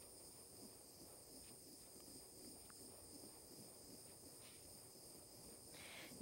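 Near silence with a faint, steady, high-pitched hiss, from a small handheld butane torch burning.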